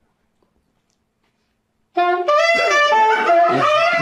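Saxophone playing a short melody of several notes, starting suddenly about halfway in after near silence.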